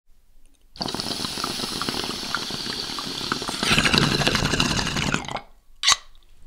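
Water bubbling and gurgling, growing louder about three and a half seconds in, then stopping; a short, sharp burst follows just before the end.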